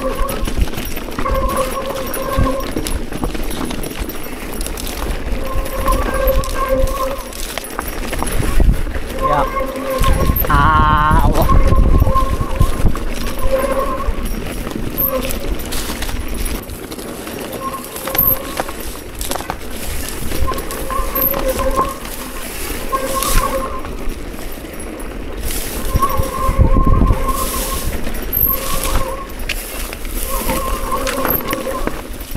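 Mountain bike descending rough, overgrown singletrack: the bike rattles, brush scrapes past and wind rumbles on the camera microphone. Short squeals of one steady pitch come every second or two as the disc brakes are applied, with one longer wavering squeal about eleven seconds in.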